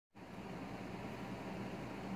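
Steady room tone: an even background hiss with a faint low hum, like a fan or air conditioner running.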